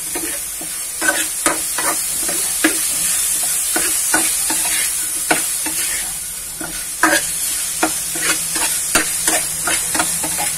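Shrimp and pork sizzling steadily in a frying pan while a metal spatula stirs them, scraping and tapping irregularly against the pan several times a second.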